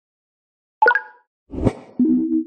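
Logo-animation sound effects: a short pitched plop about a second in, fading quickly, then a whoosh that swells with heavy bass and peaks near the end.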